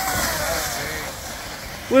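An orange plastic sled scraping and hissing over icy, packed snow as it passes close by and slides away, the rush fading over the two seconds. Faint voices are heard in the first second.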